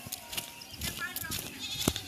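A goat bleats once, a short wavering call about a second in, over scattered footsteps on dry ground.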